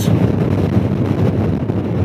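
Wind rushing over the microphone with the steady road and engine drone of a Honda Gold Wing touring motorcycle cruising at highway speed.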